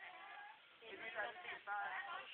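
Teenagers' voices: high-pitched calls or shouts, louder in the second half.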